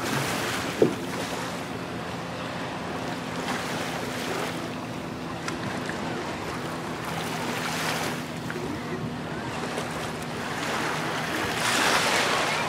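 A passenger ferry's engine running with a steady low hum, under wind on the microphone and the wash of water, which swell every few seconds. There is one sharp knock about a second in.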